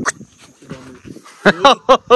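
A dog barking: three short, loud barks in quick succession near the end.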